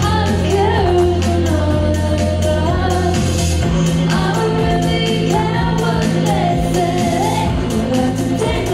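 A woman singing over an electric bass played live through an Ampeg SVT amplifier. The Yamaha TRB 1006J six-string bass holds long low notes and moves up to a higher sustained note about three and a half seconds in.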